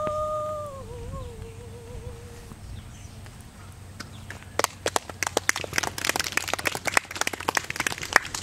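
A woman's held sung note that slides down, wavers and fades out in the first two and a half seconds. Then, after a short pause, audience clapping breaks out about four and a half seconds in and keeps going, louder than the singing.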